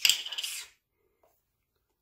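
A plastic body wash bottle being handled: a brief rasping, rattling noise lasting under a second.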